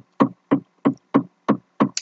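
A run of short, sharp knocks, evenly spaced at about three a second, with dead silence between them.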